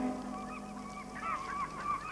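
A rapid series of short, wavering, honk-like bird calls over faint music.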